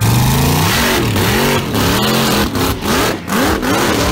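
Supercharged Pontiac Firebird drag car launching at full throttle and accelerating down the strip. The engine pitch climbs and drops back several times as it shifts up through the gears.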